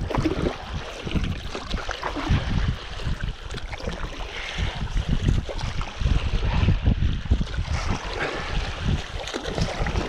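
Water rushing and splashing along the nose of a Tower Yachtsman inflatable stand-up paddle board as it is paddled hard, with wind buffeting the microphone.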